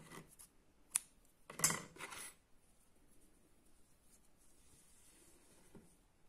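Scissors snipping crochet cotton thread: one sharp click about a second in, followed by a brief rustle of the crochet work being handled.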